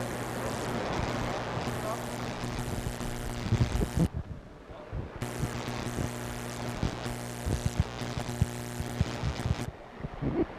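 Electrical buzz in the studio audio: a steady low hum with overtones, a fault the crew is trying to trace. It cuts out about four seconds in, comes back a second later, and stops shortly before the end, as switches are flipped, with scattered clicks and knocks from handling the gear.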